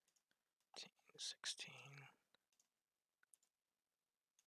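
Mostly near silence, broken about a second in by a brief muttered, half-whispered phrase from a voice. A few faint computer mouse clicks are scattered around it.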